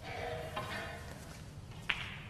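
Snooker balls clicking together once, sharply, near the end, as balls roll after a shot. A faint hum lies under it in the first second.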